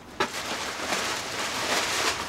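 Packing paper rustling and crinkling as it is pulled from a cardboard box, starting with a sharp click just after the start.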